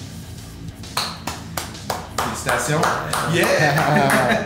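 A few irregular hand claps starting about a second in, then a cheer of "Yeah!" near the end, over background music.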